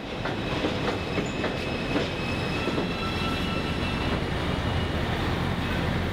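Elevated subway train running past on the el: a steady rumble with a few wheel clacks in the first two seconds and faint thin squealing tones midway.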